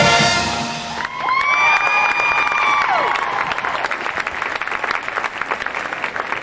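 Marching band holding a loud brass chord with drums, cut off about half a second in, followed by audience applause and cheering with loud whistles.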